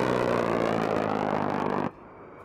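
A-10 Warthog's GAU-8/A Avenger 30 mm rotary autocannon firing one long burst at about 3,900 rounds per minute, heard as a steady low buzz that cuts off suddenly near the end.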